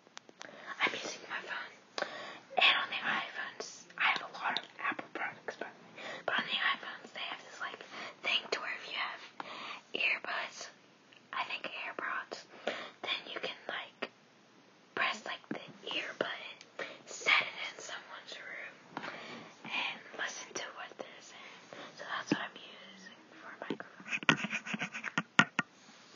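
A girl whispering close to the microphone in short breathy phrases, with a brief pause about halfway through.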